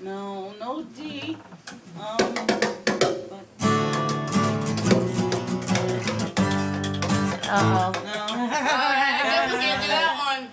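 Acoustic guitar being strummed: a few separate strums, then steady full strumming from about three and a half seconds in, with a voice over it near the end.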